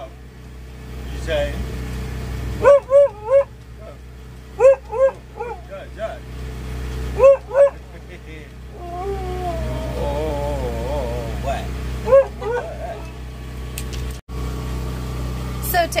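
A large dog barking in short, high bursts, mostly in quick runs of two or three, with a longer wavering whine near the middle. A steady low rumble runs underneath.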